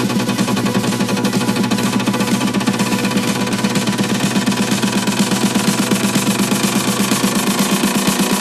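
Progressive house / melodic techno track playing in a DJ mix: a rapid, even pulsing over a held bass note.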